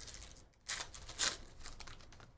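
A trading card pack's wrapper crinkling and cards rustling as they are handled, with two louder rustles a little under a second in and just past a second.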